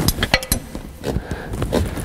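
Steel hand tools clinking against the valve rocker gear as a spanner and screwdriver are set on a rocker's lock nut and adjusting screw to set the valve clearance. There are a few sharp metal clicks in the first half second, one ringing briefly, then lighter scattered taps.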